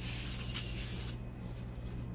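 Aerosol can of foaming glass cleaner spraying onto a car's door window, a pulsing hiss that cuts off sharply just over a second in.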